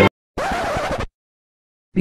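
Logo music cuts off suddenly, and a moment later a short record-scratch sound effect plays for under a second, followed by silence.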